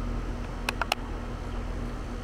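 A quick cluster of sharp plastic clicks from the Inficon Stratus leak detector's housing being handled, about a second in, over a steady low hum.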